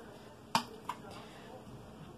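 Two short, sharp clicks about a third of a second apart, the first louder, over faint room tone.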